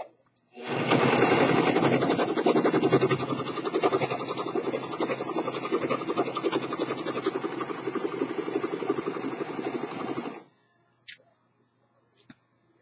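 Singer three-thread serger (one needle, two loopers) running steadily at speed as it stitches and trims a seam. It starts about half a second in and stops about ten seconds in, followed by one short snip near the end as the thread chain is cut with scissors.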